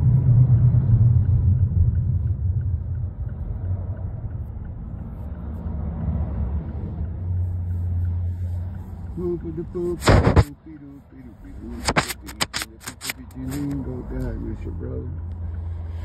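Car cabin road and engine rumble while riding along. About ten seconds in there is a sharp loud knock, and a little later a quick run of clicks and knocks.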